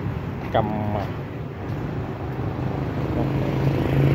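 Street traffic with a motorbike engine running close by, its steady hum growing louder toward the end.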